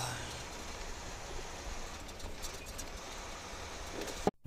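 Steady low drone of a Volvo 730 semi truck's engine and tyres, heard inside the cab while cruising at highway speed, with a few faint clicks just past halfway.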